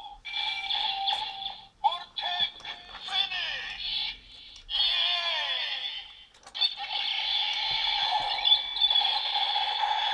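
Kamen Rider Build DX Build Driver toy belt, loaded with the Phoenix and Robot full bottles, playing its electronic voice calls and sound effects in short bursts. From about seven seconds in it plays a continuous looping tune.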